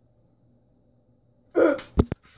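Quiet room tone, then about a second and a half in a short, loud burst of breath and voice from a person, like a sneeze, followed by a sharp click at the very end.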